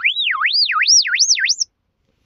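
An electronic alarm that goes off every 15 minutes: a single pure tone warbling up and down about two and a half times a second while climbing steadily in pitch, then cutting off suddenly about one and a half seconds in.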